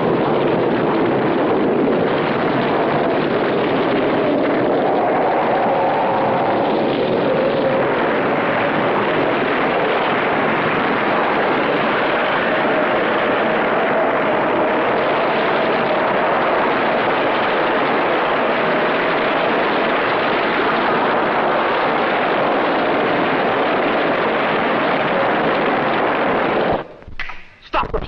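A film sound effect: a continuous loud rushing noise with faint wavering tones running through it. It cuts off suddenly near the end.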